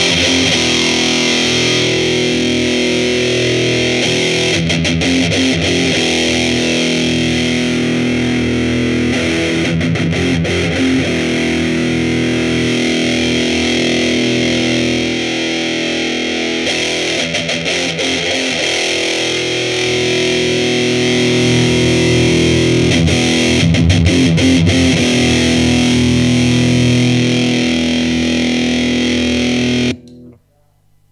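Electric guitar played through a TC Electronic Rottweiler distortion pedal into a Laney CUB12 amp: heavily distorted chords, each let ring for several seconds before the next. The sound stops abruptly at the very end as the pedal is switched off.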